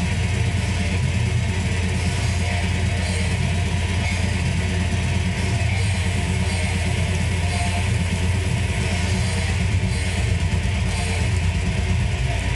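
Electric guitar playing a heavy metal rhythm riff, loud and continuous with a heavy low end.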